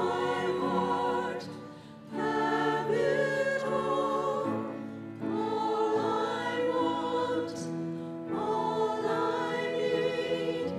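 A choir singing a slow hymn in long held phrases, the voices wavering with vibrato over steady low notes, with brief breaks between phrases about two, five and eight seconds in.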